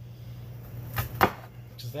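Two chops of a santoku-style knife cutting through an onion onto a bamboo cutting board, about a quarter second apart and about a second in; the second chop is the louder.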